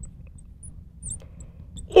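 Marker squeaking faintly on a glass lightboard as a word is written, a scatter of short high squeaks over a low room hum.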